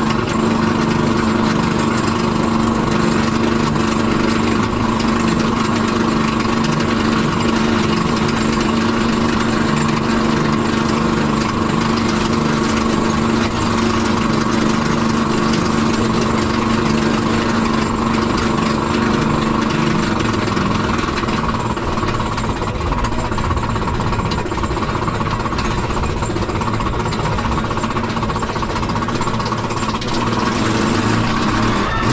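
Steel Eel roller coaster train climbing its chain lift hill: the lift chain and anti-rollback ratchet clatter rapidly and steadily under the cars, with a steady mechanical hum underneath.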